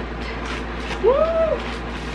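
A woman's single short 'woo!' exclamation, its pitch rising then falling, over a steady low background hum.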